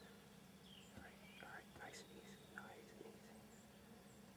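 Near silence with faint whispering about a second in, over a steady low hum.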